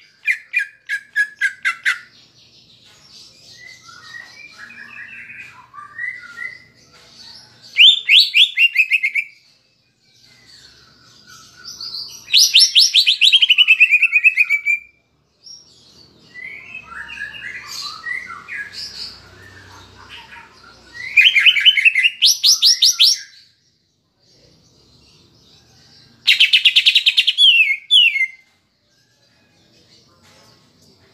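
Cucak ijo (greater green leafbird) singing in loud bursts of rapid trills, five times, each lasting one and a half to two and a half seconds, with softer twittering between them. Its song is filled with mimicked kapas tembak phrases.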